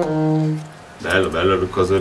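The performance's last held note stops about half a second in. About a second in, a man's voice follows in short, pitch-bending bursts.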